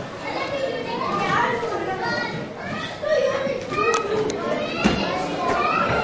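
Audience chatter: many overlapping voices, children's high voices among them, with no one voice clear. A couple of brief knocks sound in the second half.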